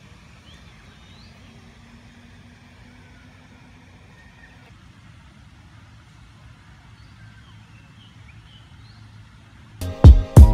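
Faint outdoor ambience: a low steady rumble of distant city traffic, with a few faint bird chirps scattered through it. Loud music cuts in at the very end.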